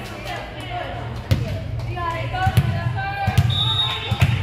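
A volleyball bounced several times on the gym floor, each thud echoing in the hall, under voices from players and spectators. A referee's whistle sounds briefly near the end.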